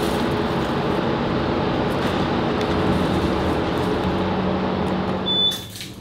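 Steady mechanical hum with several held low tones, as of machinery running in an underground parking garage. A short high beep sounds near the end as the hum fades.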